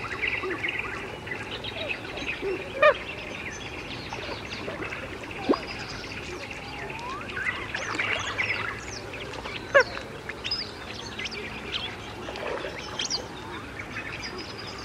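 Birds calling and chirping, many short calls and sweeping notes overlapping, over a low steady hum. Three short, sharp sounds stand out louder, about three, five and a half, and ten seconds in.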